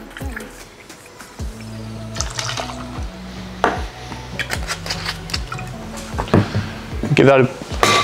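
Background music with a steady beat and bass line, over gin being poured from a bottle into a metal jigger and tipped into a steel cocktail shaker, with a few metal clinks near the end as the shaker is closed.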